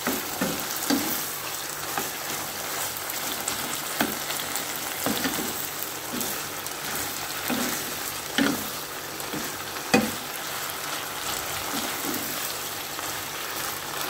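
Minced pork and vegetables sizzling in a nonstick wok as a wooden spatula stirs them, scraping and knocking against the pan now and then. The sharpest knock comes about ten seconds in.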